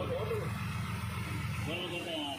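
An engine running steadily with a low, evenly pulsing hum that drops away near the end, under people talking.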